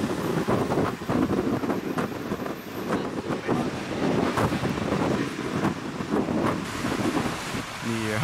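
Wind buffeting the microphone in uneven gusts, a low rumbling noise that rises and falls.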